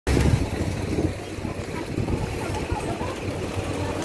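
Busy street ambience: a steady low rumble, with scattered voices of passers-by in the background.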